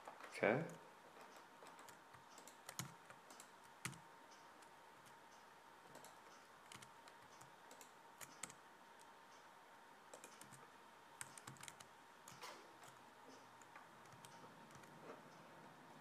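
Faint, scattered clicks and taps of a computer keyboard and mouse being worked, a few close together at times. A faint steady tone hums underneath.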